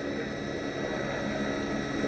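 Steady background noise with a faint constant hum, the broadcast's ambient sound in a gap between commentary.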